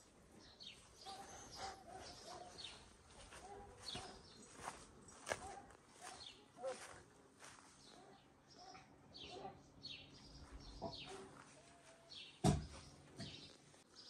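Faint songbird chirping in a garden: many short, high chirps that sweep downward, scattered through the whole stretch, with a single sharp knock near the end.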